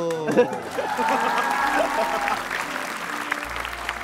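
A studio audience applauding, with voices over the clapping. A wavering sung note trails off just before it.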